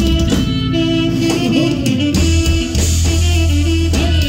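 Live band playing an instrumental chilena mixteca for dancing, with guitar and drums over a deep bass line that moves note by note.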